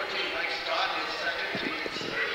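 Crowd chatter in a gymnasium, with a few dull thuds on the hardwood court near the end.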